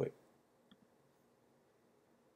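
The last syllable of a spoken word, then near silence broken by two faint clicks a little under a second in.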